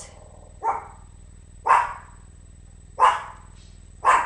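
A dog barking three times, about a second apart.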